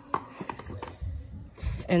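A few light taps and clicks as cylindrical cocktail-pod canisters are handled and set down on a stone countertop, followed by low rumbling handling noise.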